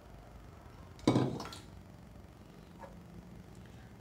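A stainless steel bowl clanks once against the stove or pan about a second in, with a short metallic ring. A fainter knock follows near three seconds.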